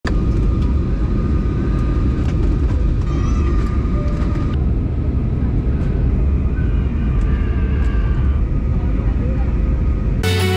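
Steady low rumble of a jet airliner's engines and rushing air, heard inside the passenger cabin, with faint voices of passengers underneath.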